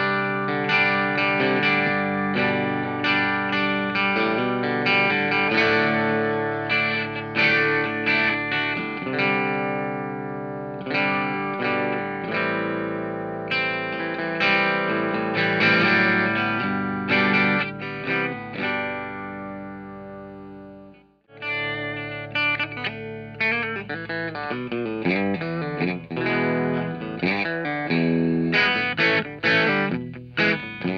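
1958 Vega SG-99 solid-body electric guitar with a single-coil pickup, played through a Hotone Nano Legacy Britwind amp at medium gain: picked notes with light overdrive. The playing rings down and stops briefly about 21 seconds in, then resumes with faster picking.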